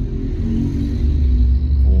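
Deep road and engine rumble inside the cabin of a Hyundai ix35 driving on a highway, swelling louder about halfway through.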